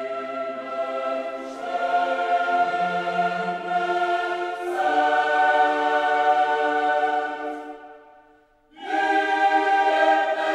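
Background choral music: a choir singing long, held chords that shift every few seconds. It fades away about eight seconds in and comes back strongly a moment later.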